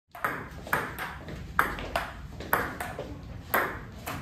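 Table tennis rally: a ping-pong ball clicking back and forth off the paddles and table in a steady run of sharp clicks, roughly two a second.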